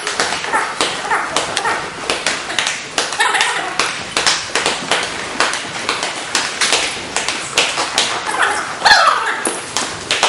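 Many irregular slaps and taps, several a second, of hand strikes landing on padded sparring gloves, with voices calling out.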